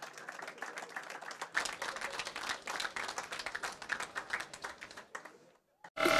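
Audience applauding, many hands clapping, fading out near the end.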